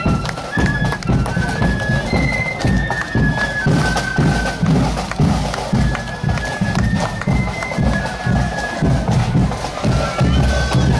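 Marching flute band playing a tune in unison, a line of held high notes over a steady beat of bass and side drums, about two beats a second.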